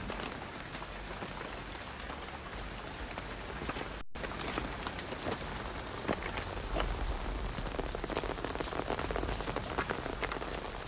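Heavy rain falling steadily, with sharp individual drop hits standing out more in the second half. The sound cuts out for a moment about four seconds in.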